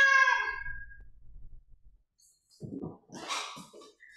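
A cat's meow voiced by a performer: one drawn-out meow of about a second, its pitch rising then falling away. A few faint breathy sounds follow later on.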